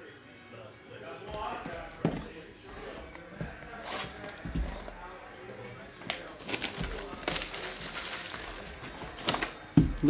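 Hands handling a sealed hobby box of trading cards and working at its plastic wrapping: scattered clicks, taps and crinkles, busiest a little past the middle, with a sharper knock near the end.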